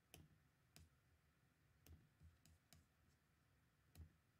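Near silence broken by about half a dozen faint, irregular clicks.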